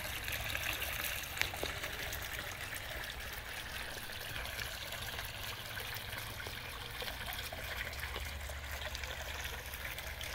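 Water trickling and splashing steadily as it spills from the top terracotta pot of a pondless fountain into the pot below and down into the gravel basin.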